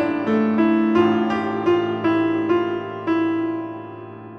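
Background piano music: a run of ringing single notes that grows quieter in the second half.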